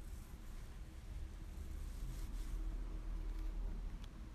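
Quiet background noise: a steady low rumble with faint hiss, and a brief soft rustle a little past two seconds in.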